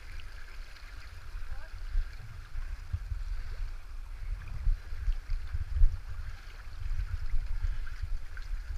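River water running around a kayak, heard through a body-mounted action camera whose microphone adds a heavy, unsteady low rumble from wind and buffeting. There is a brief low bump near six seconds in.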